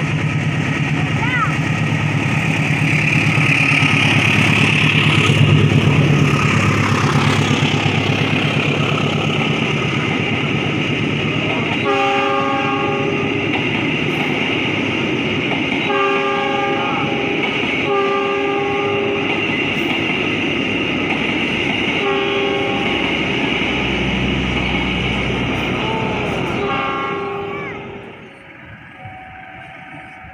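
Diesel-electric locomotive and passenger coaches passing slowly, held to about 20 km/h by a speed restriction over new switches and sleepers. A steady engine rumble is loudest in the first several seconds, then the coaches roll past on the rails. About twelve seconds in, a series of short horn blasts begins, and the noise falls away sharply near the end as the last coach clears.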